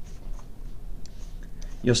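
Low scratchy rustling with a few soft clicks over a faint background hiss, ending as a man's voice resumes near the end.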